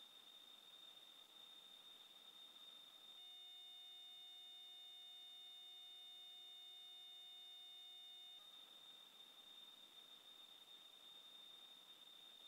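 Near silence: room tone with a faint steady high-pitched whine. About three seconds in, a faint steady electronic tone made of several pitches starts, holds for about five seconds, then cuts off.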